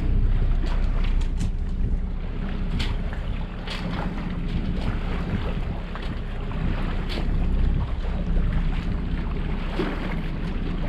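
Tohatsu 6 hp Sailmaster four-stroke outboard running steadily at low speed, with wind buffeting the microphone throughout and a few brief clicks or water slaps.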